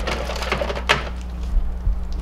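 Heat-damaged plastic Nerf blasters clattering and scraping against each other and the inside of a burnt-out microwave as they are rummaged and pulled out by hand, a run of small clicks and knocks with one sharper crack a little under a second in. A steady low hum runs underneath.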